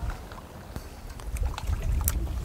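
Wind buffeting the camera's microphone, an uneven low rumble, with a few faint clicks over it.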